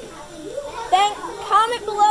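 A child's high voice talking, starting about half a second in.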